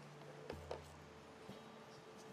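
A few faint sharp clicks, two close together about half a second in and a weaker one near the middle, from handling a hot glue gun while gluing a craft-foam strip, over a low steady hum.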